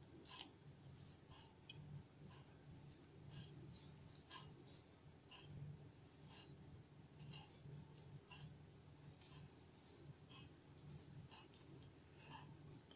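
Near silence: a faint, steady high-pitched whine, with soft faint ticks about once a second.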